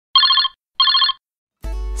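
An electronic telephone-style ring trilling twice, two short rings each about a third of a second long and half a second apart. Background music starts near the end.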